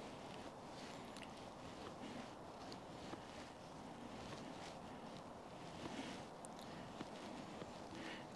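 Faint rasping strokes of a scandi-ground Solognac Sika 100 knife shaving curls down a dry maple stick for a feather stick, about one stroke every second or so.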